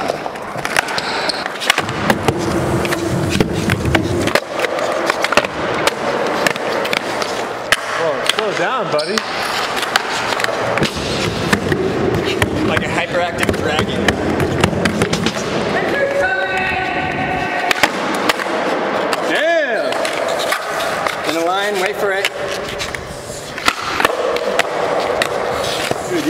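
A skateboard cut in half and rejoined with door hinges, its wheels rolling over a concrete floor and wooden ramps, with many sharp clacks of the deck and wheels hitting the ground and obstacles. Voices call out and laugh about two-thirds of the way through.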